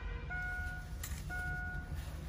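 Electronic warning beeper inside a Daewoo Magnus cabin sounding a steady, evenly repeating beep, about one a second, each beep lasting a little over half a second. The ignition is on with the engine off.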